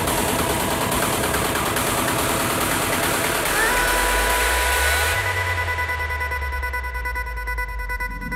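Psytrance music in a breakdown without the kick drum. A dense, noisy synth wash plays first; about three and a half seconds in, a short rising glide leads into held high synth tones over a low bass drone.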